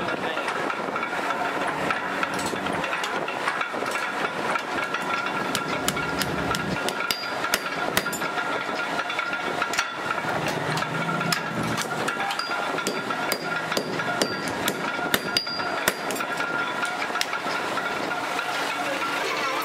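Hand hammer striking red-hot iron on an anvil, many sharp blows at an uneven pace, as horseshoe nails are forged. A steady high hum runs underneath.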